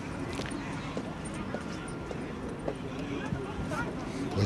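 Open-air ambience at a football pitch: scattered, faint shouts and calls from players and spectators over a steady background, with a few light knocks.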